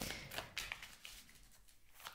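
Faint rustling and soft tapping of a large oracle card deck being shuffled by hand. The sound thins out to near quiet in the second half.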